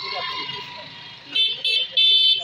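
A vehicle horn honking three short times in quick succession starting about a second and a half in, over the chatter of a street crowd.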